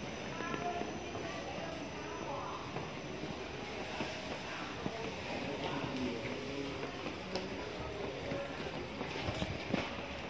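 Shopping-mall ambience: a steady background hum with faint, indistinct voices and a few light clicks near the end.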